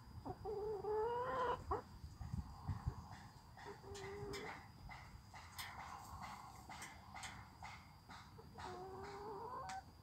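Hens calling: two drawn-out calls that rise in pitch, one about half a second in and one near the end, with a shorter call about four seconds in. Short sharp sounds are scattered in between.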